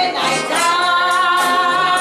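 A female vocalist sings with a live traditional jazz band of banjo, guitar, sousaphone, saxophone, trombone and trumpet. From about half a second in she holds one long note over the band.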